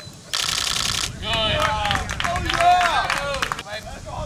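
A rapid rattling burst of clicks lasting under a second, then several seconds of people's voices calling out, too far off to make out.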